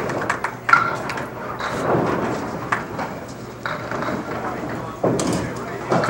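Candlepin bowling hall ambience: background chatter from players and spectators, with several sharp knocks scattered through it.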